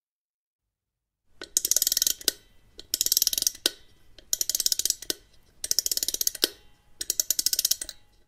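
Wind-up key of a music box being turned: starting about a second in, five bursts of rapid ratchet clicks, each under a second, with short pauses between them.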